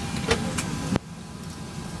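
Steady low cabin hum of an MD-11 airliner standing at the gate, with a sharp click about a second in, after which the rumble drops and it turns quieter.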